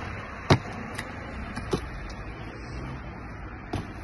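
A parkour runner's shoes landing on pavement and stone: one sharp thud about half a second in, a few lighter footfalls after it, and another thud near the end as a jump is landed, over steady outdoor background noise.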